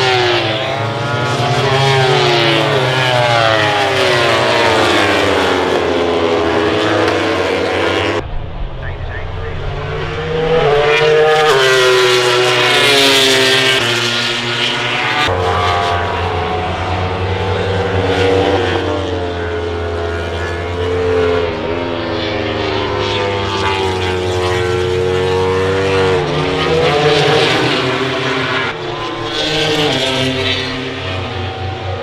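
MotoGP racing motorcycles at speed, their four-cylinder engines sweeping up and down in pitch as they pass and shift gears, over a steady low drone. The sound changes abruptly twice, at about 8 and 15 seconds.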